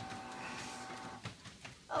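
Home treadmill running with a steady high motor whine that drops away about a second in, under soft thuds of two children's footsteps on the moving belt.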